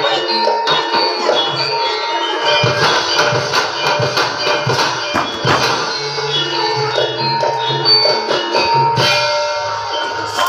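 Gamelan music playing: ringing struck notes over drum strokes, with the drumming busiest from about two to six seconds in.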